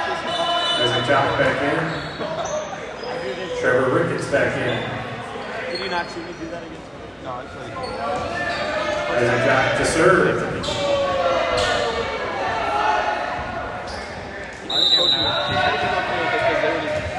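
Echoing voices of players and spectators in a school gymnasium, with a volleyball bouncing on the hardwood court between points. Near the end comes a short, sharp, high whistle blast, typical of the referee signalling the serve.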